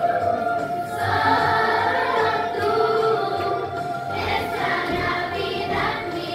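Children's choir singing a Christmas song together, sustained sung notes.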